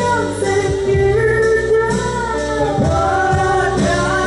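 A live pop-rock band playing, with a woman singing a slow melody in long held notes that glide between pitches, over bass guitar and drums.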